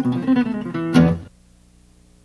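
Acoustic guitar music: plucked notes, then a final strummed chord about a second in that cuts off abruptly, leaving only a faint steady hum.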